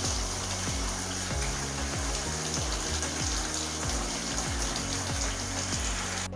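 Hot water spraying from a shower head onto sticks in a bathtub: a steady hiss throughout. Background music with a regular beat runs underneath.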